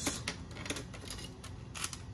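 Light, irregular plastic clicks and taps as a black plastic part is handled and set in place on a TV's sheet-metal back chassis. The loudest click comes near the end.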